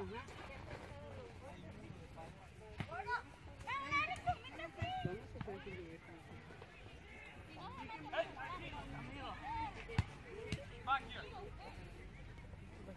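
Voices of soccer players shouting and calling across an open field, the words not clear. A few sharp thuds of the ball being kicked stand out, the loudest about ten seconds in.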